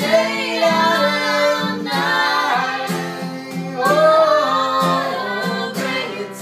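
Live music: a voice singing a melody over a strummed guitar, with steady strokes keeping time.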